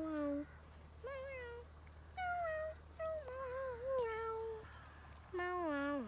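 A young child making wordless, sing-song 'ooo' sounds: about five drawn-out notes that swoop up and down in pitch, in the way the child voices the glider's dives and loops.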